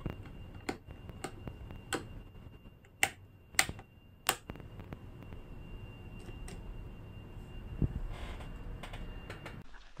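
Sharp mechanical clicks from a custom computer power-up panel: toggle switches with flip-up red safety covers, a key switch and a push button being worked one after another. About a dozen irregular clicks come in the first seven seconds, the loudest three close together between about three and four and a half seconds in.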